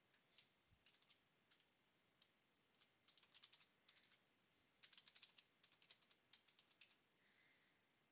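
Computer keyboard typing, very faint: irregular keystrokes, scattered at first and then coming in quicker runs from about three seconds in.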